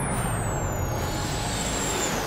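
Steady rushing, wind-like hiss from a cartoon soundtrack, with a faint high whistle that glides down during the first second and then holds.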